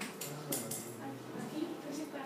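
Short scratchy rustles, three or four in the first second, as a mallet is rubbed against hair, over low murmuring voices.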